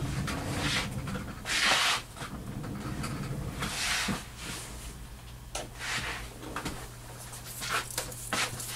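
Handling noises: a few brief rustles and several small knocks and clicks. About four seconds in, a click is followed by a steady low hum.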